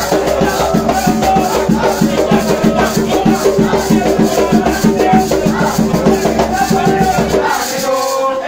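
Umbanda ritual music: drums keeping a fast, even beat with maracas shaking, and voices singing over it. The drumming stops just before the end.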